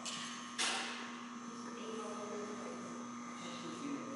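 Steady electrical hum, with one short hiss about half a second in that fades away quickly.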